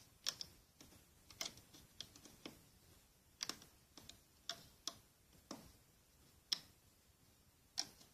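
Looming hook clicking against the plastic pegs of a Rainbow Loom as rubber bands are lifted off and looped over: about a dozen quiet, sharp clicks at irregular intervals, some in quick pairs.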